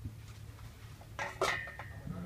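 Red lingzhi (reishi) mushroom caps dropped into the stainless steel bowl of a dial scale: two sharp knocks about a quarter second apart, a little past the middle, and the metal bowl rings briefly after them.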